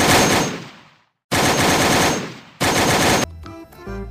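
Automatic-rifle gunfire sound effect: three bursts of rapid fire, the first fading away over about a second, the next two stopping abruptly.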